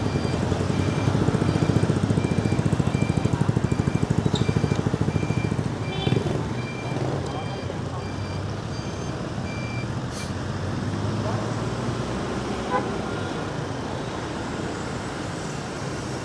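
Traffic rumble from a motorbike ride in city streets, close behind a small box truck, louder over the first six seconds and then steadier. A short high beep repeats evenly through the first ten seconds.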